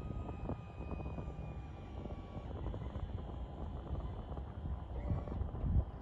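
Wind buffeting an outdoor microphone in an uneven low rumble, with a faint high whine that drifts slightly down in pitch and fades out about two and a half seconds in.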